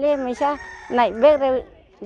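A woman's voice speaking into a handheld microphone in short, loud phrases.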